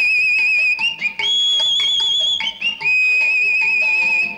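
Title music from a 1974 Malayalam film score: a high melody in long, wavering held notes, moving to a new note about once a second, over short plucked notes.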